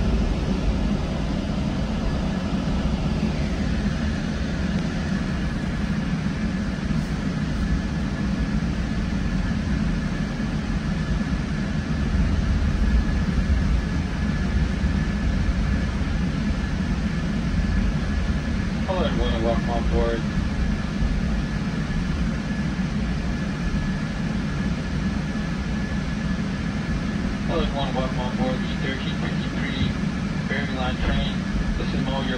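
Low, steady rumble of a GO Transit commuter train pulling out slowly, heard from inside a passenger coach, with a thin steady whine above it.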